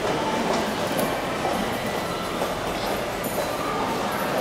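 Steady, echoing ambience of a busy underground pedestrian passage: a constant rumbling hum with footsteps ticking faintly through it.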